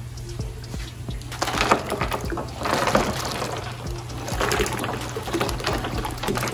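Coarse salt crystals poured from a plastic pitcher into tub water, splashing in three short spells, over background music.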